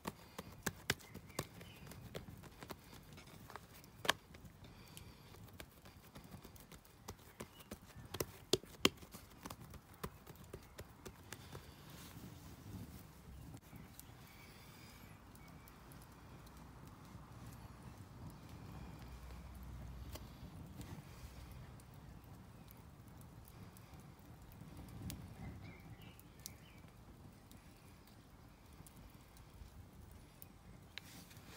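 Hands pressing out pizza dough on a wooden chopping board, with scattered sharp knocks against the board through the first ten seconds or so. After that come quieter handling sounds as passata is squeezed from a carton onto the dough, over a low rumble.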